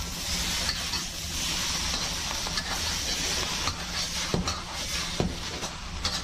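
Beef and wide rice noodles sizzling in a hot wok as they are stir-fried: a steady frying hiss, with a couple of sharp knocks of the utensil against the wok late on.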